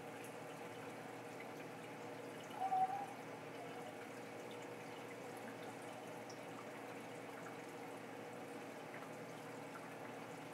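A running reef aquarium system with steady trickling and splashing of circulating water and a steady hum from its pumps and protein skimmer. A short, higher-pitched sound stands out briefly about three seconds in.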